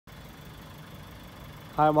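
Audi A4 1.4 TFSI turbocharged four-cylinder petrol engine idling, a steady low hum; a man starts speaking near the end.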